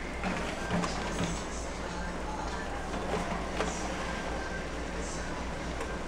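Aluminium foil baking pans being set on and slid along an oven's wire racks, with a few light metal clicks and scrapes over a steady low hum.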